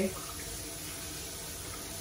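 Kitchen tap running steadily, its stream splashing over a catfish held under it by hand and into a pot of water below as the fish is rinsed.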